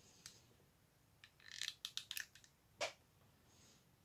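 A few faint, sharp clicks and taps from handling a hot glue gun, most of them bunched between about one and two and a half seconds in.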